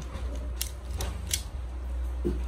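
Small plastic parts of a transforming toy ambulance clicking as they are pressed and snapped together by hand: three sharp clicks within about a second, over a low steady hum.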